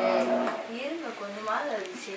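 An electric food processor kneading chapati dough hums steadily and is switched off just after the start. It is followed by a voice sliding up and down in pitch, like a sing-song exclamation.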